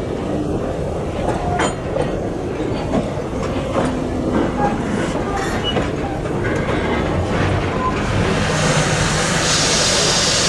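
Heritage steam-train passenger carriages rolling slowly over jointed track: a steady rumble with wheels clacking and brief metallic flange squeals. Near the end a high hiss of steam comes in.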